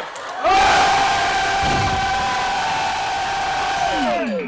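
A group of voices shouting one long, held cheer in unison. It starts about half a second in, holds a steady pitch, and falls away in pitch at the end.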